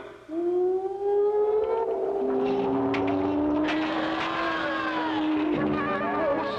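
Eerie ghostly wailing from the cartoon soundtrack: long, slowly sliding moans, with a second, lower moan joining about two seconds in.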